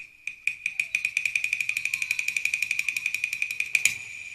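Cantonese opera percussion roll: sharp strikes on a high-pitched percussion instrument, a few spaced strikes that quickly speed up to about ten a second and stop shortly before the end. A steady high ringing tone runs underneath.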